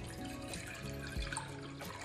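Water pouring in a steady stream from a plastic measuring jug into a stainless-steel pot, under soft acoustic background music.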